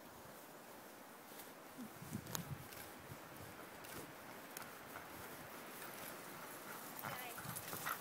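Faint sounds of a sled dog team approaching along a snowy trail: dogs' sounds and scattered short ticks, growing louder toward the end as the team nears.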